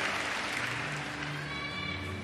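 Arena crowd applause fading away, over low steady background tones.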